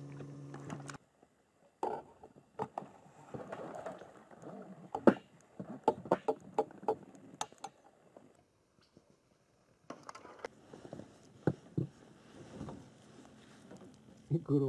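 A steady hum cuts off about a second in. After that, irregular sharp knocks and clicks of rod and tackle handling in a small boat follow as a fish is hooked on a float rod and brought aboard, the loudest knock about five seconds in.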